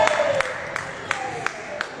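Squash play on a court with a wooden floor: a string of sharp knocks, about three a second, from the ball and the players' feet. A pitched squeal slides downward in the first half second.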